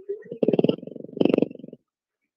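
A sleeping pet snoring, heard over a phone line: a rapid rattling snore in two pushes, the second louder, lasting about a second and a half. It sounds enough like a growl that the listener at first asks what she is mad about.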